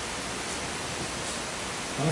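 Steady, even background hiss with no distinct event.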